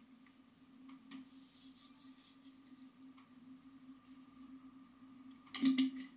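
Quiet kitchen room tone: a steady low hum with a few faint ticks, then a short, louder clatter near the end.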